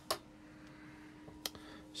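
Two sharp clicks about a second and a half apart, over a faint steady hum.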